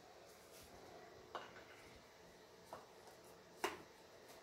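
Mostly near silence with three faint metal clicks, the last and loudest near the end, as a piston held in a ring compressor is handled and set down onto the cylinder bore of a Triumph TR6 engine block.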